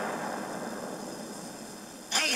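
Audience cheering and applause from a broadcast clip, fading away steadily, heard through a small portable radio's speaker.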